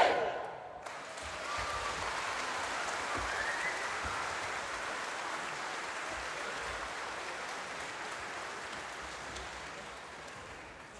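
The last chord of a concert band dies away in the first second, then an audience applauds steadily, the clapping slowly fading toward the end.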